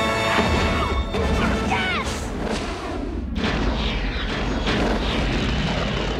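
Dramatic film score mixed with booming impacts and crashes from an action-fantasy film's soundtrack.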